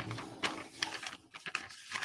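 Sheet of paper, an electricity bill, being handled, rustling and crinkling in a quick run of small crackles that thin out near the end.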